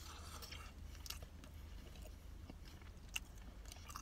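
Faint chewing of a mouthful of pizza, with small scattered clicks of the jaw and crust and one sharper click near the end, over a steady low hum.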